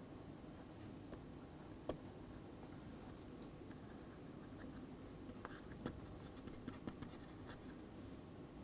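Pen stylus tapping and scratching on a tablet screen during handwriting: faint scattered light clicks over steady low room noise.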